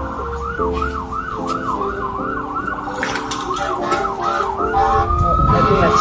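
An emergency vehicle siren in a fast warbling yelp, about three cycles a second, switching to a slower rising wail about five seconds in, over background music.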